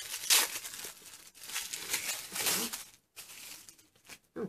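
Tissue-paper wrapping crinkling and rustling in irregular bursts as it is pulled open by hand. It is loudest just after the start and eases off near the end.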